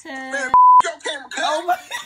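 Censor bleep: a single loud, steady tone about a quarter second long, cutting in sharply about half a second in, between a drawn-out voice and chatter.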